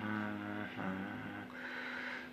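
A man humming a slow melody in several long held notes.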